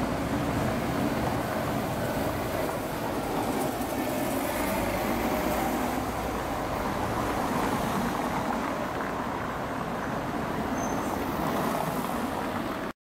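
City street traffic: cars driving past close by, a steady, unbroken noise of engines and tyres.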